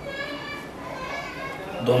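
A child's voice in the background, high-pitched and talking or calling, then a man starts speaking near the end.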